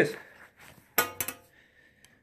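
Metal fishing pliers handled and opened: a sharp metallic click about a second in, then a couple of lighter clicks and a brief faint ring.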